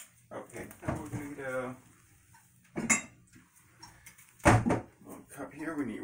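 Kitchenware being handled at a counter: a few separate knocks and clanks of metal and dishes, the loudest about four and a half seconds in.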